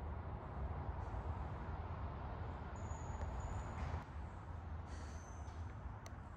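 Steady low background rumble with a light hiss, and two faint, brief high-pitched tones about three and five seconds in.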